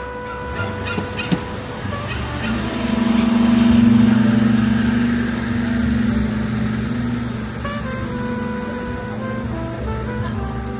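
Background music with steady held notes over street traffic. A large vehicle's engine passes close by, louder through the middle.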